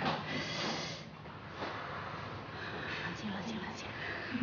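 A woman huffing and breathing hard, with short muttered words.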